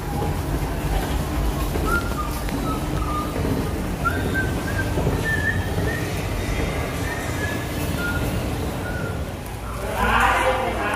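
Shopping-mall ambience with an escalator running: a steady low rumble, with faint short high notes at changing pitches above it.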